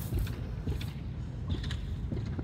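Hands planting seeds in loose soil: faint rustling and a few light clicks from the soil and a dry seed husk, over a steady low rumble on the microphone.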